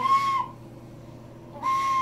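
A flute blown by a toddler: two short, breathy notes on the same pitch, one at the start and one near the end, about a second and a half apart.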